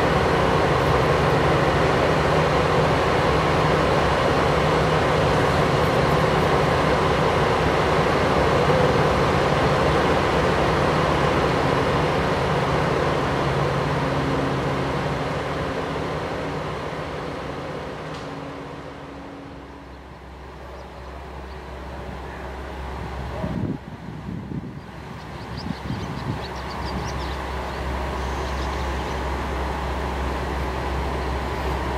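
Diesel railcar engines idling at a station platform, loud and steady with a low drone. About two-thirds of the way in the sound fades away, leaving a low hum and a few knocks.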